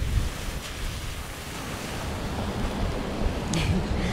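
A Mini Cooper's tyres hissing and splashing through standing water on a flooded road, mixed with wind buffeting the microphone, with a brief sharper splash near the end.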